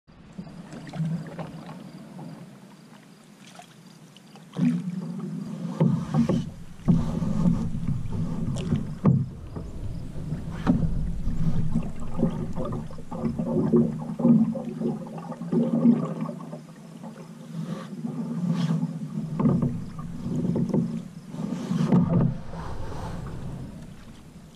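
Wooden canoe being paddled: paddle strokes in the water with irregular knocks and a low rumble carried through the hull. It is quieter for the first few seconds and gets busier about four and a half seconds in.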